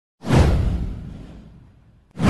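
Whoosh sound effect with a deep boom, starting suddenly a moment in, its hiss sliding down in pitch and fading away over about a second and a half.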